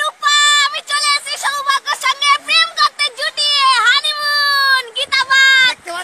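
A high-pitched voice, with long held notes and a few swooping glides in pitch, close to singing.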